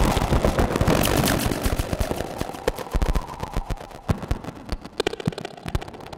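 Patched analog synthesizer putting out a dense run of sharp electronic clicks and crackles over a faint steady tone, thinning out and getting quieter as it goes.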